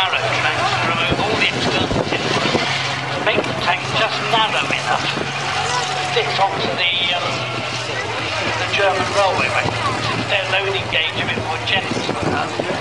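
Tiger I tank (Tiger 131) driving past, its Maybach V12 petrol engine running as a steady low hum under a continuous irregular clatter and squeak of the steel tracks and running gear.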